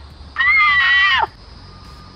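A woman's voice holding one high, playful note for just under a second, dropping in pitch as it ends.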